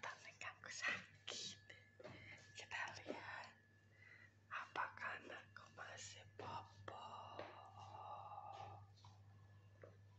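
A person whispering in short, broken bursts, over a faint steady low hum.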